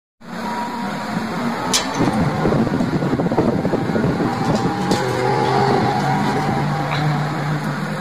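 Street traffic noise, with a vehicle engine running steadily close by.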